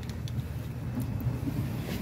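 Low, steady rumble of wind buffeting the microphone on an exposed, windy breakwater.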